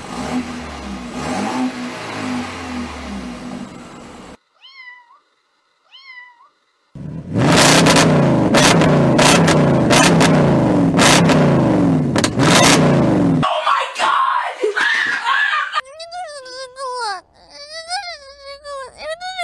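A BMW 428i's exhaust running with one brief rev, then two short meow-like calls, then an Audi S5 revving hard for about six seconds with repeated sharp exhaust cracks, the loudest part. A child wails near the end.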